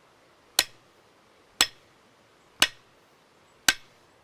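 Four sharp strikes about a second apart, a hatchet's steel poll driving a hickory handle into a maul head. The strikes sound solid, the sign that the head is seated hard against the shoulder carved on the handle.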